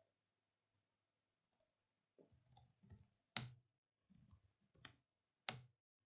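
A few faint, scattered clicks from a computer mouse and keyboard against near silence.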